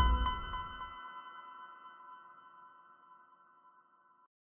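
Audio logo sting: a sudden deep hit with bright, bell-like chime tones that ring on and slowly fade away.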